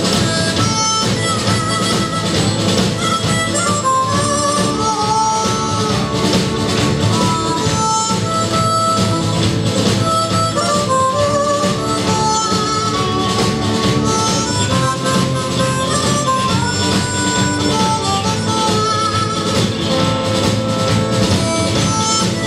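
Live instrumental band music with a harmonica playing the lead melody in held and sliding notes, over electric guitar, bass guitar, drum kit and violin keeping a steady rhythm.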